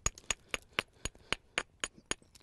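Small hammerstone tapping along the edge of a stone handaxe, light sharp clinks at about four a second, shaping and thinning the edge.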